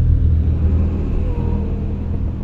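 A deep, steady low rumble.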